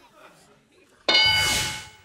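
Family Feud game board's answer-reveal ding: one bright, bell-like chime that starts suddenly about a second in, after a quiet pause, and fades within a second as the answer turns over.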